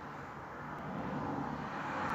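Steady background noise, a low rumble and hiss with no distinct events, growing slightly louder toward the end.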